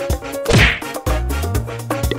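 A loud whack about half a second in, over lively background music.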